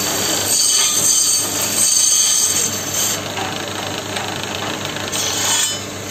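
Motor-driven wood lathe running with a steady low hum while a hand-held turning chisel cuts the spinning wooden spindle. The cuts come in passes, each a loud scraping hiss: about half a second in, again around two seconds, and once more near the end.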